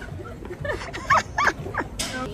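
Women laughing with short, high-pitched squeals, several in quick succession starting about half a second in.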